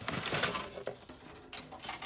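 Cardboard box and stiff plastic-sheathed 12-2 Romex cable being handled by hand: a scraping, rustling sound with a couple of sharp clicks.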